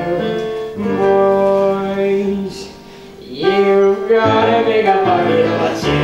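Live pit band playing the show's accompaniment, long held notes changing every second or so, with a brief quieter stretch about halfway through.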